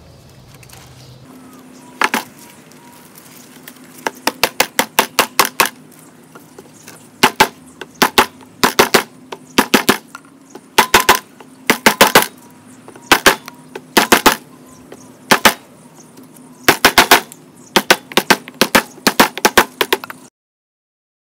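Claw hammer striking a wooden block held against damp bentonite refractory mix in a wooden form, in quick bursts of two to five sharp knocks with short pauses between them. The mix is being tamped into a more rectangular shape.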